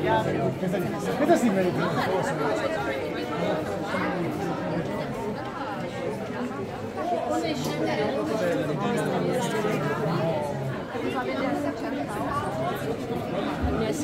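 Crowd chatter: many people talking at once, their voices overlapping continuously so that no single speaker stands out.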